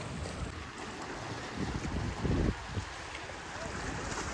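Wind buffeting the microphone, with a stronger gust about two seconds in, over the steady wash of the sea.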